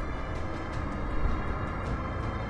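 Numatic George vacuum cleaner running with its wand sucking up fur, the audio slowed down with the slow-motion picture into a deep, steady drone.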